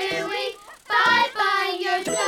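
Children's voices singing over backing music, the notes breaking every fraction of a second.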